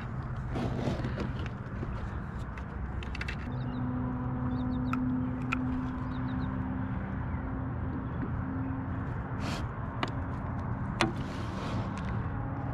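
A steady low motor hum, like a distant engine, with a few short clicks and knocks from fishing gear as the fish is netted and handled.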